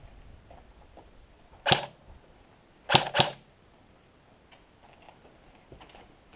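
Airsoft gun firing three single shots: one sharp crack, then a quick pair about a quarter second apart a little over a second later.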